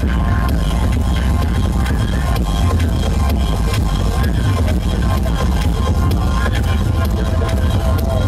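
MD 2000 truck-mounted sound system playing electronic dance music at high volume, dominated by a heavy bass and a steady beat.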